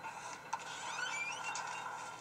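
Film soundtrack heard through a small portable DVD player's speaker: a quiet, steady, tense background with one click about half a second in and a few short rising squeaks.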